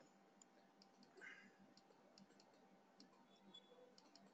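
Near silence: room tone with a few faint, scattered clicks, such as a computer mouse or keyboard makes.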